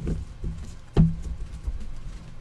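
A hand setting trading cards down on a desk covered with a playmat: a few dull knocks on the tabletop, the loudest about a second in.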